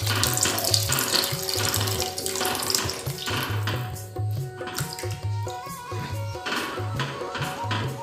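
Background music with a repeating low beat, over the wet sloshing of a runny pumpkin and cornflour mixture being stirred with a spatula in a pan. The sloshing is strongest in the first half and fades about halfway through.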